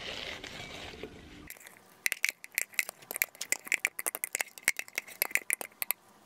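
Salad sliding out of a plastic container onto a plate with a soft rustle. Then a fork tosses the salad, its tines clicking and scraping against the plate in quick irregular strokes.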